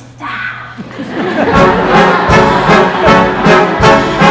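Pit orchestra playing a loud show-tune passage with a steady beat, swelling up about a second in after a brief laugh.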